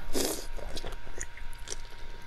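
Close-miked mouth sounds of a bite into a soft, sauce-glazed braised food: one loud wet bite just after the start, then smaller wet clicks of chewing.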